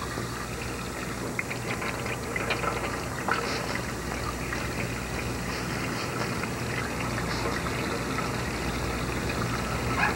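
Water running steadily from a faucet into a restroom sink, with a few light clicks.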